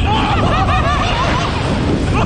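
Two young men laughing loudly together on a slingshot thrill ride, in quick repeated bursts, over a low rumble.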